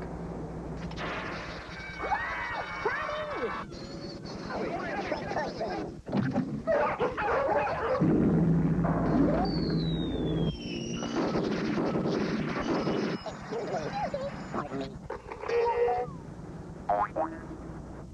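TV commercial soundtrack: voices and sound effects in short, abruptly cut segments, with a falling whistle-like glide about halfway through.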